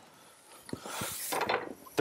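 Cardboard packing sheet rubbing and scraping as it is lifted and slid off a wooden table in its shipping box, with a few light knocks. The rustle starts a little before halfway through and ends just before the close.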